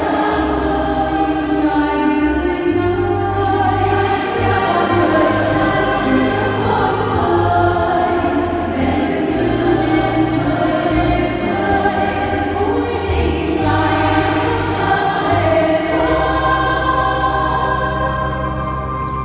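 Large mixed church choir singing a Vietnamese hymn in several parts, with steady low notes underneath that change every second or two.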